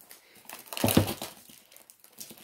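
Plastic wrapping crinkling as it is pulled and worked at by hand to get it off a kit box, with a brief louder, low sound about a second in.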